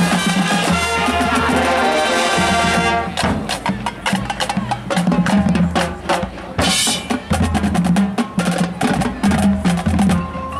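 Marching band music: the full band with brass for about three seconds, then a drum feature of rapid snare, tenor and bass-drum strokes over a held low bass line, with a brief high crash near seven seconds.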